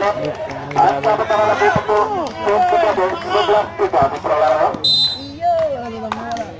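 Voices shouting and calling during a volleyball rally, with two sharp knocks about two and four seconds in.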